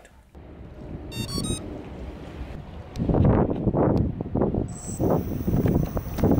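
Wind buffeting the microphone, a low rumble that grows into strong uneven gusts after about three seconds. A quick run of high electronic beeps comes about a second in.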